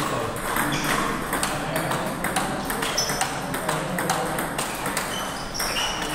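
Table tennis ball clicking off the paddles and the table during a rally: irregular sharp ticks, several of them with a short, high, ringing ping.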